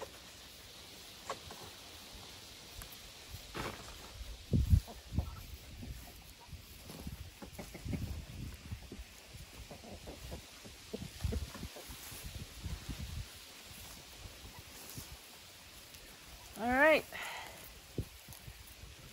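Hands digging and sifting through loose garden soil for potatoes: soft scraping and rustling with irregular dull thumps, the loudest about four and a half seconds in. Near the end comes one short wavering call.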